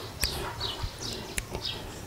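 Bird chirping: short, high notes that fall in pitch, about two a second, with a few sharp clicks between them.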